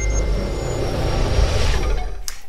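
The tail of an intro logo jingle: a held high chime note fades out over a steady low rumble, and a hiss swells toward the end.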